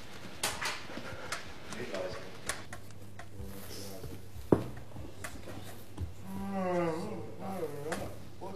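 Quiet indistinct voices in a room, broken by scattered small clicks and knocks. A sharp knock about four and a half seconds in is the loudest sound. Near the end comes a longer wavering vocal sound, its pitch going up and down.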